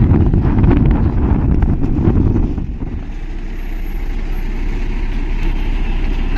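Road rumble from a moving vehicle with wind buffeting the microphone. About two and a half seconds in it drops to a steadier, quieter low rumble.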